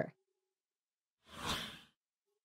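Near silence, then a single short whoosh sound effect about one and a half seconds in, marking a slide transition.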